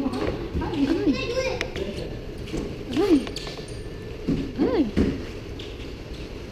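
Indistinct voices in an echoing hall, with short pitched calls that rise and fall, three of them, about a second apart to two seconds apart.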